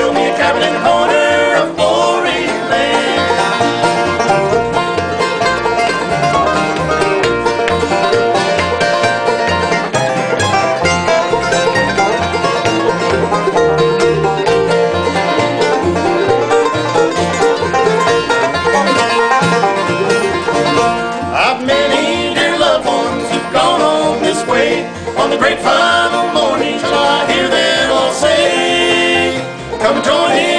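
Bluegrass band playing an instrumental break: a five-string banjo picking rapid rolls out front over acoustic guitar and upright bass.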